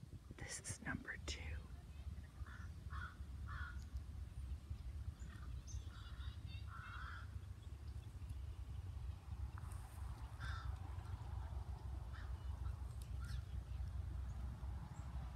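Wind rumbling on the microphone, with a few short distant calls, crow-like caws, a few seconds in and again around the middle.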